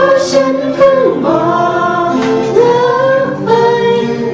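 Several voices singing a song together in unison over strummed acoustic guitars, with held notes that glide between pitches.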